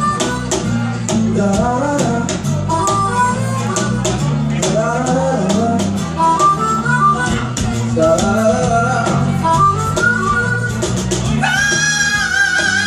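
Acoustic blues band playing live: a harmonica solo with bent, sliding notes over strummed acoustic guitars, bass guitar and a steady cajon beat. Near the end the harmonica holds one long wavering note.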